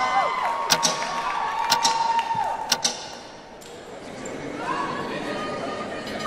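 Audience cheering and whooping, with a few sharp knocks about once a second over the first three seconds. The cheering fades about halfway through, and one more whoop rises near the end.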